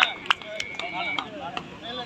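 A few sharp slaps from kabaddi players on the court, mixed with short shouts. A thin steady tone is held for about half a second in the middle.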